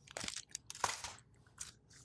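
Faint crinkling of a comic book's plastic sleeve being handled and picked up: a few short rustles.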